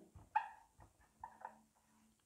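Marker squeaking faintly on a whiteboard while writing: one short squeak about a third of a second in, then a few shorter, fainter squeaks around a second and a half.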